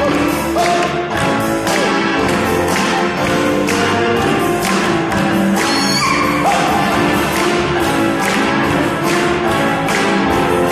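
Live band playing in a concert hall: a drum kit keeping a steady beat of about two strokes a second under sustained keyboard chords and violin, with little or no singing.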